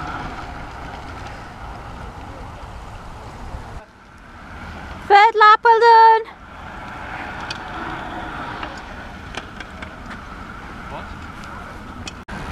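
A loud, high-pitched shout of encouragement from a spectator about five seconds in, lasting about a second. Steady outdoor noise from wind and air rumble on the microphone runs underneath.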